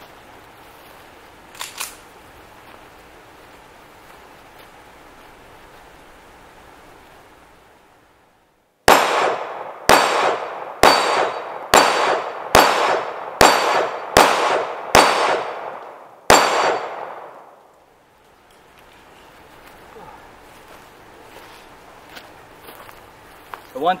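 Colt Competition 1911 pistol in 9mm fired nine times, about one shot a second with the last after a slightly longer pause, each shot echoing briefly.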